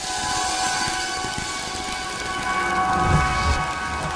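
Animated-logo sound effect: a dense, rain-like wash of noise under several sustained tones, with a low rumble swelling about three seconds in.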